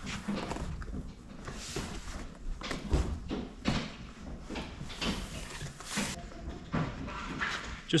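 Large sheets of corrugated cardboard being slid and pressed against a piece of furniture: irregular scraping rustles and dull knocks, with a heavier thump about three seconds in.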